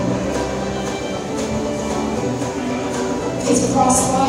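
Live contra dance band playing a dance tune, a steady flow of music.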